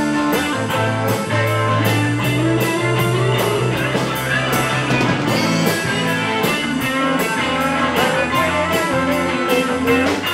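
Live rock band playing an instrumental passage: an electric guitar line over a drum kit keeping a steady beat of cymbal and drum hits. The guitar line slides upward a few seconds in.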